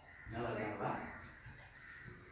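A crow cawing, one call that starts about a third of a second in and lasts under a second.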